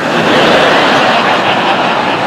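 A large theatre audience laughing together, a loud, even roar of laughter held for the whole two seconds.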